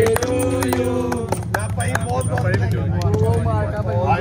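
A small group of men clapping hands, with voices singing and calling out over it, a long held note in the first second.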